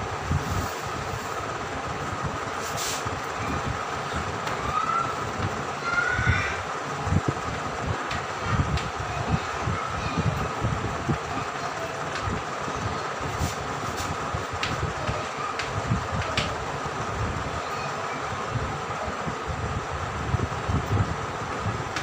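Chalk tapping and scratching on a blackboard as words are written, over a steady background hum with a low rumble. A couple of short rising squeaks come about five and six seconds in.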